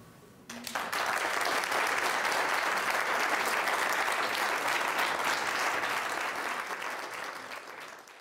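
Audience applauding, starting within the first second and easing off toward the end.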